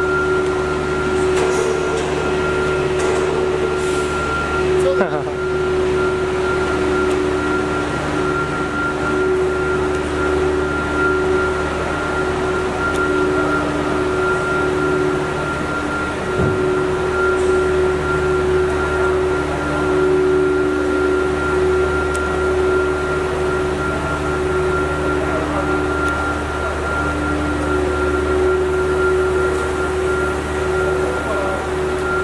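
Plastic pipe extrusion line running in a factory hall: a steady machinery hum made of several constant tones over a low drone, with a brief knock about five seconds in.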